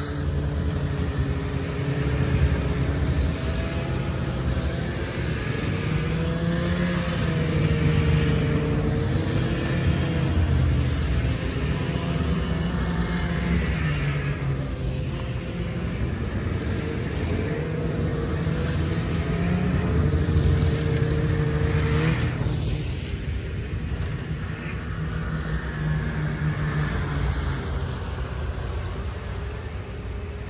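A group of snowmobiles riding past one after another, their engines running continuously and swelling and fading as each sled passes, the pitch bending up and down.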